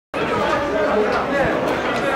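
Several men talking over one another at once, a steady babble of overlapping voices.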